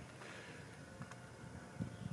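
Quiet outdoor background with a few faint ticks, one about a second in and another near the end.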